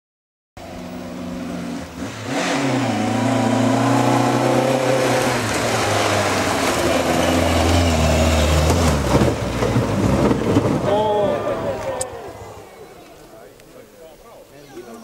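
Mk1 Ford Escort rally car's engine running hard at high revs as it passes, the pitch dropping and climbing again with gear changes, over gravel noise from the tyres. Near the end the engine fades, people's voices rise, and there is one sharp click.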